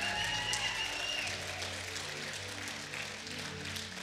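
A congregation applauding while a keyboard holds soft sustained chords underneath, the chords changing every second or so; the clapping eases off a little toward the end.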